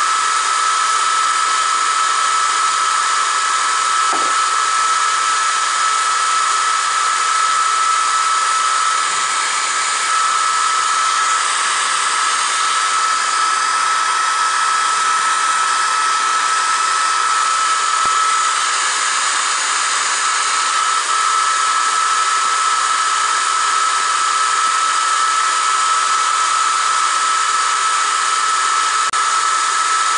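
Steady whir of an electric fan or blower with a constant high-pitched whine, unchanging throughout.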